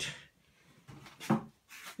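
Faint rubbing and scraping as a hand handles an equatorial telescope mount, with one sharp click a little past halfway.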